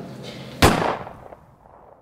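A single sharp bang about half a second in, fading out over about a second.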